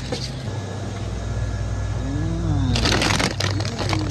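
Crinkling of a plastic bag of frozen curly fries as a hand grabs and squeezes it, starting about three quarters of the way in, over a steady low hum.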